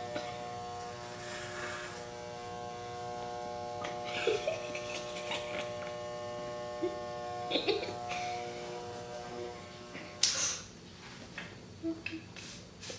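Electric hair clippers with a 1.5 guard running with a steady buzz, switching off about nine and a half seconds in. A brief loud rush of noise follows about a second later.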